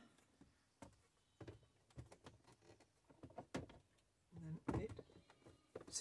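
Scattered faint clicks and light knocks of plastic being handled as a Peugeot Boxer's instrument cluster wiring connector is snapped in and the binnacle is set into the dashboard; the sharpest click comes about three and a half seconds in.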